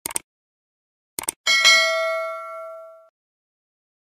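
Subscribe-button animation sound effects: short clicks at the start and again just after a second in, then a bright bell ding that rings out and fades over about a second and a half.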